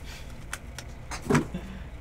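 Light handling noises of trading-card packs and foil wrapper on a table: a few faint clicks and rustles, with one brief louder sound about two-thirds of the way through.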